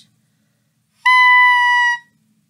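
Clarinet mouthpiece with its reed, played on its own without the rest of the instrument, sounding one steady, loud, high note for about a second, starting about a second in.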